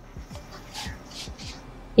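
Soft rustling of cotton jersey fabric and curtain-tape cord as they are handled, in a few faint brushes near the middle.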